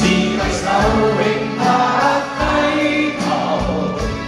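A live pop song played by a band, sung by many voices together as a crowd chorus, with drum hits roughly once a second.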